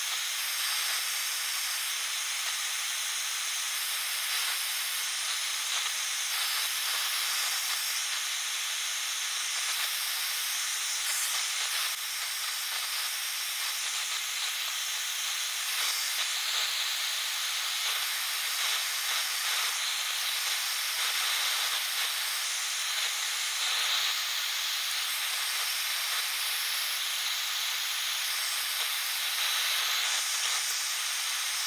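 Handheld gas torch burning with a steady hiss, its flame played on a bend in thick steel angle to heat it.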